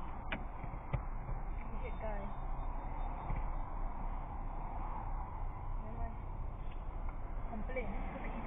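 Steady traffic noise from passing cars on the expressway, picked up by a dashcam inside a stopped car, with two faint clicks about a second in.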